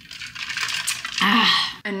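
Ice cubes clinking and rattling against the sides of a lidded plastic tumbler as it is handled, followed by a brief bit of a woman's voice.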